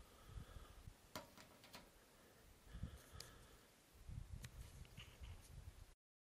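Near silence, with a few faint clicks and patches of low rumble.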